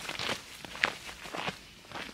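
Footsteps of several people walking on a stony dirt trail, an irregular run of steps passing close by.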